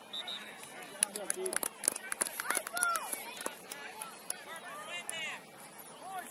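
Distant, overlapping shouts and calls of youth soccer players and sideline spectators across an open field, with a cluster of sharp clicks about one to three seconds in.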